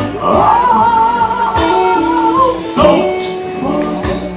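Live gospel quartet music: a male voice sings a long held note with vibrato over electric guitar, bass and drums.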